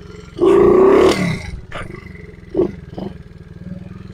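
A 70cc pit bike's small single-cylinder engine running low, with a sharp throttle burst about half a second in that lasts under a second and falls back in pitch, then two short blips of the throttle.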